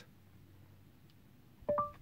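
Google Assistant's short rising two-note chime through the Chevy Bolt's cabin speakers near the end, the tone that signals the assistant is listening after the steering-wheel voice button is pressed. Before it, only faint cabin room tone.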